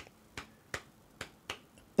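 Four sharp finger snaps tapping out a clave rhythm, the syncopated beat that underlies much Latin jazz.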